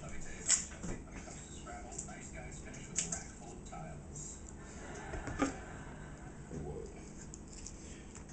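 Faint speech in the background, with three sharp light knocks or clicks from handling things in a kitchen.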